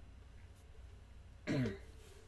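A man clears his throat once, a short sound falling in pitch, about one and a half seconds in, over a low steady hum.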